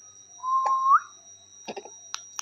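A short whistled note, held steady and then sliding up in pitch at its end, followed about a second later by a few quick clicks and a brief low sound.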